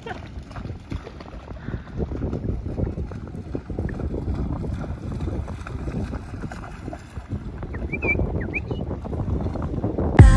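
Shallow sea water splashing and sloshing, with wind buffeting the microphone.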